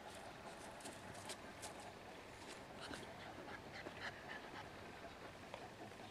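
Moscow Watchdog puppy sniffing and rustling about in dry leaf litter: faint, with many small crackles.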